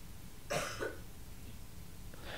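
A person coughing: two short coughs close together, about half a second in.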